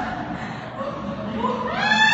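Wordless human vocalizing: held, sliding vocal tones. A louder tone rises in pitch near the end.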